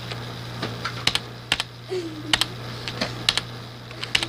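Irregular sharp clicks and clacks of small hard plastic items being handled and knocked together, about a dozen over four seconds, several in quick pairs.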